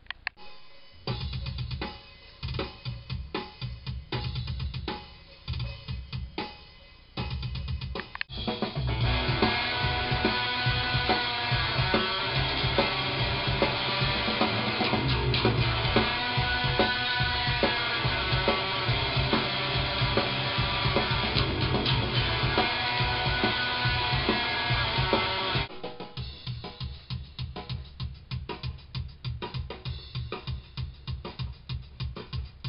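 Technical death metal played in a recording studio: drum-kit hits in stop-start bursts, then the full band with electric guitar comes in loud and dense about eight seconds in, dropping back to quieter rapid drum hits near the end.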